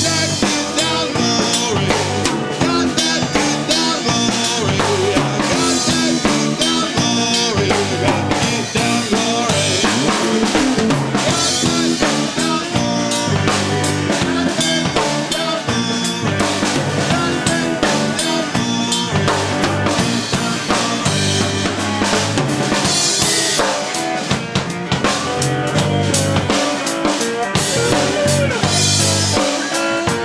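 Blues trio playing an instrumental passage: slide guitar with gliding notes over electric bass and a drum kit keeping a steady beat.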